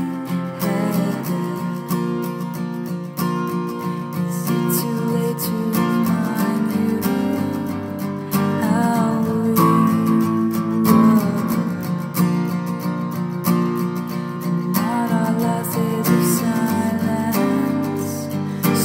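Music: an acoustic guitar strummed steadily, with a few wavering sung-like notes at times.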